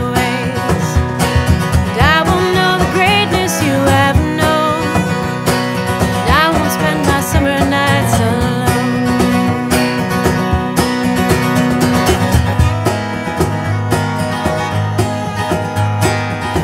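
Instrumental break of an acoustic folk-country song: acoustic guitar strumming and a fiddle playing a lead line with sliding notes over a beat of hand percussion on a cajon and snare.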